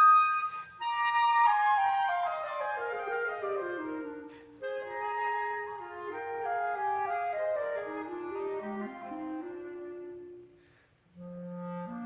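Flute and clarinet playing together in a chamber-music passage: a run of notes falls steadily from high to low, then winds on through lower notes. Near the end there is a short break before a low held note comes in.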